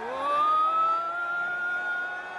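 A siren-like tone that glides upward over about half a second and then holds steady at one pitch.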